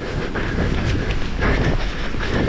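Heavy wind buffeting on a body-worn action-camera microphone, mixed with irregular thuds and scuffs of the wearer scrambling over sand in pursuit of a seal.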